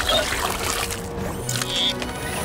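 Cartoon sound effect of a large gulp of water being sucked up through a straw, a steady watery noise, over background music.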